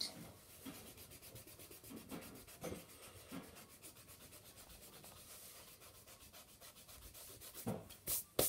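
Fast back-and-forth rubbing on sketchbook paper, a faint, even scratchy rhythm, with a louder tap near the end.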